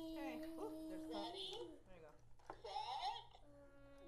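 A child vocalizing with long, steady held sounds: one for about a second and a half at the start, then quieter scattered voice sounds, then a second held sound near the end.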